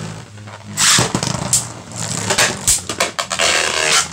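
Two Beyblade Burst tops, Cosmo Dragon and Bushin Ashura, spinning in a plastic stadium with a steady whir, clashing against each other in several sharp clacks — hard hits, most of them from Ashura.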